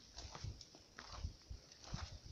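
Faint footsteps on snowy ground, a few soft, irregular low thuds.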